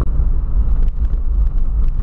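Interior cabin noise of a 2008 Volkswagen Polo 1.6 sedan under way: a steady low rumble of engine and road noise while cruising.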